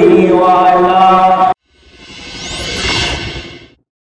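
A man's voice chanting a held devotional line through a microphone, cut off abruptly about a second and a half in. After a brief silence a whoosh sound effect swells up, peaks and fades out shortly before the end.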